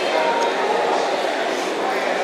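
Steady, indistinct chatter of many voices in a busy food court, with no single voice standing out.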